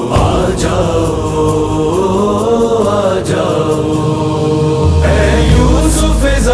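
Devotional manqabat music: long, wavering sung vocal lines held and ornamented without clear words. A deep bass drone comes in near the end.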